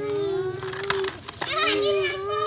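A child's voice imitating a truck engine: one long steady hum, broken briefly just past a second in, then taken up again.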